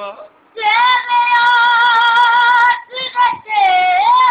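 A boy singing in a high voice, holding one long steady note for about two seconds, then breaking off for a short phrase before starting another note near the end.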